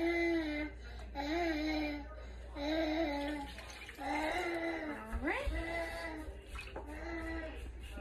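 A young child in the background makes repeated short whining cries, each about a second long and coming about once a second, with one rising cry about halfway through.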